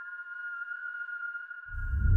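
A single high whistled note, held steady with a slight waver. Near the end a deep low rumble swells in under it.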